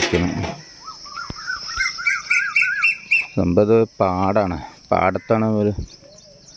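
A bird calling in a quick run of short repeated notes that step upward in pitch, over a steady high chirring of crickets, with voices talking in the second half.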